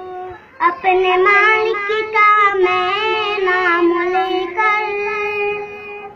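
A young boy singing a nasheed unaccompanied, in a high clear voice. He holds long notes with ornamented turns in pitch, after a short breath about half a second in.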